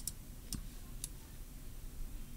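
Computer mouse button clicks: three short, sharp clicks about half a second apart, faint over a low steady background hum.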